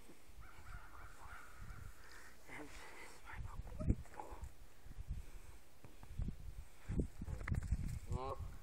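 Canada geese calling on a pond: scattered calls through the middle, then honking that starts right at the end. A few low thumps, the loudest about four seconds in.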